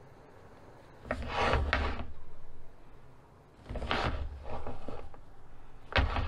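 Two spells of rubbing and scraping, each a second or two long, from a coil of clear braided plastic hose being handled and turned in the hands.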